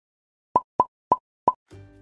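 Four quick plop sound effects, a third of a second or so apart, for an animated logo, followed by soft background music starting near the end.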